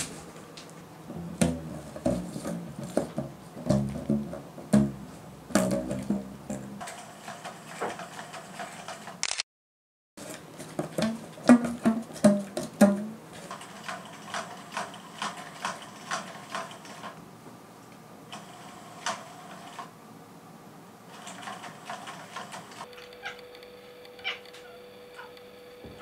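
Domestic cats meowing again and again, mixed with many sharp knocks and taps as they play with a cardboard box and a plastic ball-track toy. A steady faint hum comes in near the end.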